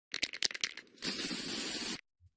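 Aerosol spray-paint can: a quick run of rattling clicks from the mixing ball as the can is shaken, then about a second in a steady spray hiss that cuts off suddenly.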